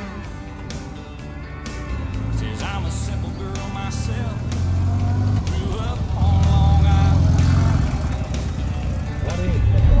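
Renault 4CV's small engine rumbling as the car drives up and passes close by, loudest about six seconds in, over background music with singing.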